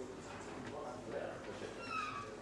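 Low, indistinct murmur of voices in a quiet snooker hall, with a short high-pitched squeak that falls in pitch near the end.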